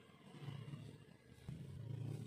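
Low steady hum under quiet room tone, a little louder from about one and a half seconds in.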